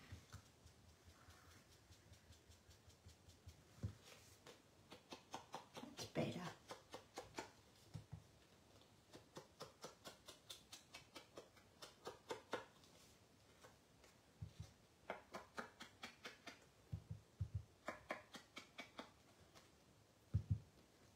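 Foam sponge dauber tapped on an ink pad and dabbed along the edges of a cardstock panel: runs of quick soft taps, about five a second, broken by short pauses.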